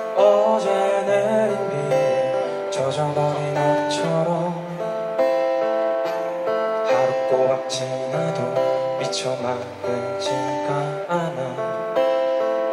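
Live band playing: strummed acoustic guitar over electric bass and a drum kit, with a few cymbal hits along the way.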